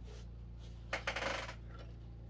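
A brief clattering rattle, about half a second long and about a second in, as a boxed plastic model kit is handled, over a steady low hum.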